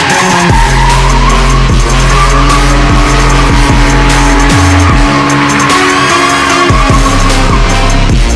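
Tyres squealing and a car engine revving as a car drifts in circles on asphalt, leaving tyre smoke, with music and a heavy bass line mixed in.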